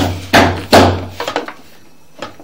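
Sewer inspection camera being pushed quickly down a drain pipe: its push cable and camera head knock about five times in the first second and a half, over a low hum.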